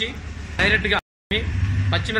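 A man speaking to the camera, with a brief cut to total silence about a second in and a steady low hum underneath.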